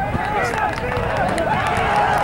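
Several voices of rugby spectators and players shouting and calling out at once, overlapping so that no words come through, over a steady outdoor noise bed.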